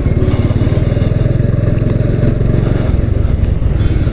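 Motorcycle engine running steadily at low road speed, a fast, even beat of exhaust pulses heard from the rider's seat.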